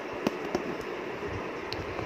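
A few small sharp clicks, two close together early and one faint one near the end, as an aari hook needle is pushed through the embroidery fabric, over a steady hiss.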